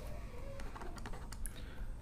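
Faint, irregular clicks and taps of a pen stylus on a tablet during handwriting, a few scattered through the two seconds, over a low steady hum.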